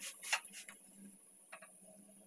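A cooking utensil clicking and tapping against a flat tawa pan while a spinach chapati is turned, with three sharp taps in the first second and two more about a second and a half in.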